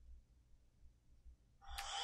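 Near silence while the trigger is held down to switch it on, then about a second and a half in, the handheld cordless air duster's 68-watt motor starts up. It gives a sudden rush of air with a rising whine as it spins up.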